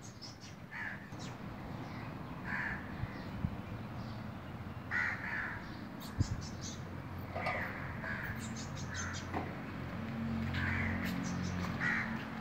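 Crows cawing, a string of short separate caws throughout, with a low steady hum coming in over the last few seconds.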